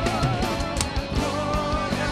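Live worship band music: a steady drum beat and guitar under a wavering melody line.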